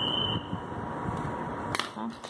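Steady background hiss, then near the end a single sharp click as a plastic pen is set down on a wooden tabletop.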